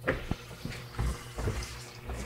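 Quiet room tone with a faint steady hum and a few brief soft knocks and rustles.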